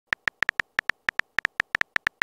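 Phone keyboard typing sound effect: a quick, irregular run of short key clicks, about seven a second, one for each letter typed.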